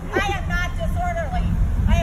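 Phone recording of a street: a high-pitched voice talks over a steady low rumble of traffic and vehicle noise.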